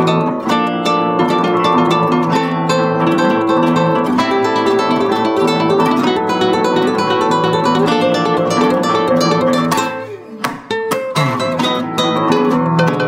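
Two classical guitars playing a lively duet of continuous plucked melody and accompaniment. About ten seconds in, the playing briefly thins out with a few sharp accents, then carries on.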